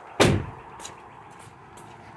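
A minivan door being shut: one loud slam about a quarter second in, dying away quickly, then a few faint clicks.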